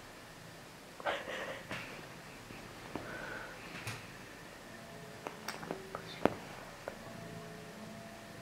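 Brief soft rustling of a duvet as a cat and a hand move on it, followed by a handful of sharp light clicks, the loudest one a little after the middle. Faint steady tones sound in the background.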